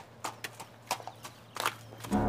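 Horse's hooves clopping on hard ground, a handful of irregular hoof strikes as a ridden horse walks and is reined in.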